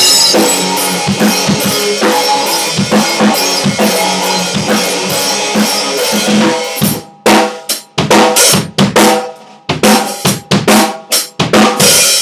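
Rock drum kit and electric guitar playing a song together. A little under seven seconds in they break into short, sharp stabs with brief silences between them, then pick up the full groove again near the end.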